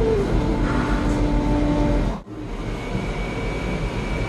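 Steady mechanical rushing noise of a running liquid-nitrogen cryotherapy chamber (cryosauna), with a held low tone over it for the first two seconds. It cuts out abruptly about two seconds in, and a steady, slightly quieter hum resumes.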